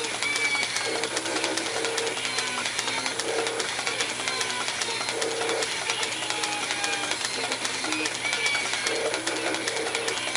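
South Bend metal lathe running while a tool turns the 60-degree point on an MT3 dead center held in the headstock spindle: a steady clatter of fine ticks with brief high tones now and then.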